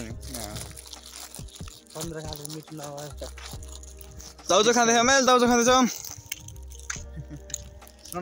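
A man's voice: bits of quiet talk, then about halfway through a loud, wavering sung note lasting about a second and a half. A low rumble comes and goes underneath.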